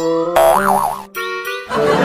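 Cartoon comedy sound effects over music: a springy boing whose pitch wobbles up and down, then a second short boing with gliding pitch. A dense, noisy sound starts just before the end.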